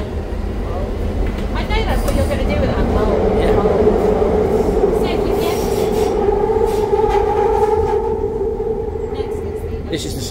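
London Underground train running, heard from inside the carriage: a low rumble under a steady whine that grows louder a few seconds in, with a second, higher whine joining over the last few seconds.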